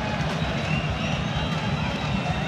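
Steady crowd noise from a packed football stadium during live play: a continuous din of thousands of fans with a low rumble underneath.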